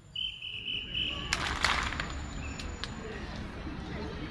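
A single steady high-pitched tone, held for about a second, then a short loud burst of hiss, over low outdoor crowd and street rumble.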